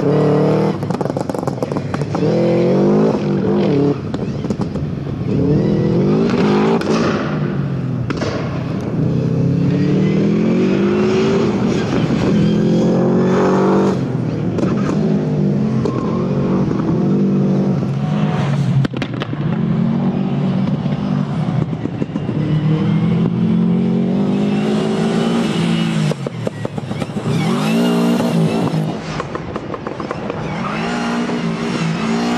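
Subaru Impreza's flat-four boxer engine driven hard, its pitch climbing under acceleration and dropping off on each lift or gear change, over and over as the car is thrown through a twisty course.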